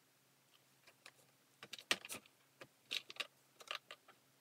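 Faint, irregular light clicks and taps of small hard objects being handled, sparse at first, then bunched in quick clusters in the middle and near the end.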